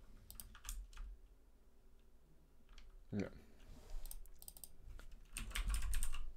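Typing on a computer keyboard in short bursts of keystrokes: a quick run near the start, another around four seconds in, and a longer, faster run near the end.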